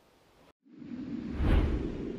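Whoosh sound effect of an animated logo sting: after a brief drop to dead silence about half a second in, a rushing swell with a deep low end builds to a peak around one and a half seconds and then starts to fade.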